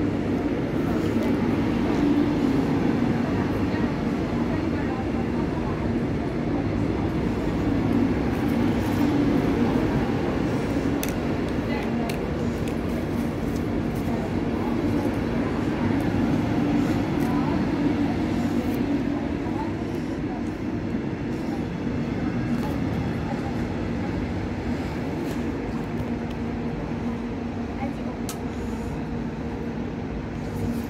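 Israel Railways passenger train rolling slowly past close by along the platform: a steady rumble of wheels and coaches that eases off somewhat in the last third.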